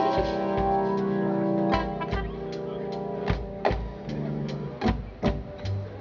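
Live reggae band playing an instrumental passage: a held chord rings for about a second and a half, then drum hits and bass notes carry on with guitar and keyboard underneath.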